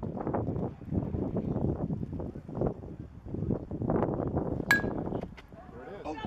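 A metal softball bat hits the ball with one sharp ping about three-quarters of the way in, over steady background noise. Spectators start shouting right at the end.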